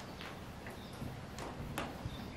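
A few faint scuffs and light knocks, a person shifting his weight on a wooden box as he tips forward and back, over a steady low background hiss.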